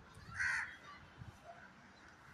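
A crow gives a single short caw about half a second in.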